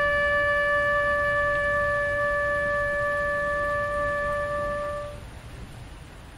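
Trumpet holding one long, steady note that stops about five seconds in.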